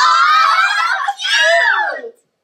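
Several girls squealing with excitement in two long, high-pitched screams of delight. The sound cuts off suddenly at the end.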